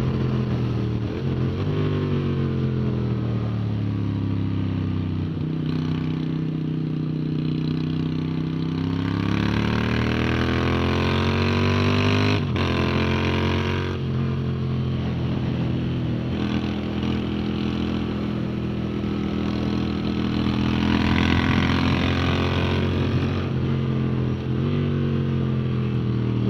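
Motorcycle engine at track speed, recorded on board with wind rush. Its pitch steps down twice in the first couple of seconds, climbs steadily under acceleration about a third of the way in, and holds fairly even before dropping again near the end. There is a single sharp click about halfway.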